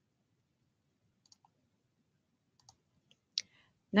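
Near silence broken by a few faint computer-mouse clicks, the loudest about three and a half seconds in.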